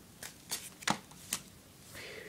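Bagged comic books being handled and shifted on a table: about four short plastic-and-paper clicks and rustles, the third the loudest.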